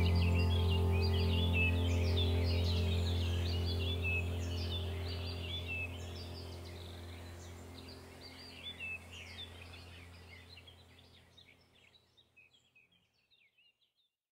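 Calm ambient music with a sustained low drone and held tones, with birds chirping over it; both fade out slowly, the music gone about twelve seconds in and the last faint chirps soon after.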